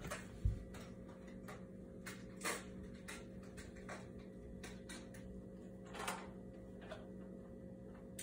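Faint handling noise: a few soft knocks and short rustles over a steady low hum, with one low thump about half a second in.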